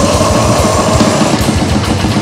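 Death metal band playing live: heavily distorted electric guitars over fast drumming with rapid bass-drum strokes. A held higher note rings over the riff and fades about a second and a half in.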